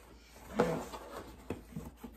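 Handling of a cardboard shipping box and the soft items inside: a louder rustle about half a second in, then a few light knocks and clicks as a plush toy is lifted out.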